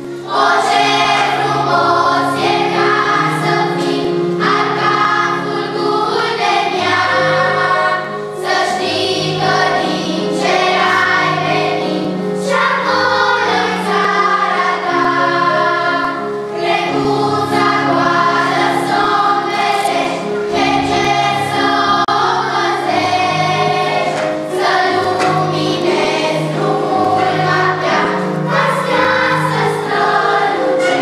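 Children's choir singing a song in phrases, with short breaks between phrases, over sustained low instrumental notes.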